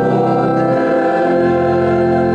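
A choir singing a hymn in long held chords with organ accompaniment; the low notes move to a new chord about a second and a half in.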